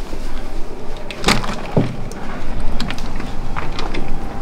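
A glass sliding balcony door on a cruise ship being slid open, with a few knocks and clicks about a second and a half in, over a steady rushing noise.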